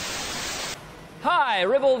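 A burst of analogue TV static hiss that cuts off abruptly under a second in. After a short gap a man starts speaking in a theatrical voice whose pitch swoops up and down.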